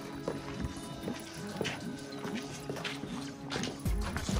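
Background music with a steady, quick rhythm of short repeating notes.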